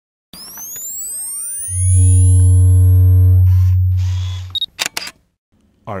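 Synthesized logo-intro sound effect: a swirl of sweeping pitch glides, then a loud, deep steady hum under a held chord of tones for about three seconds. It ends with a few sharp clicks like a camera shutter.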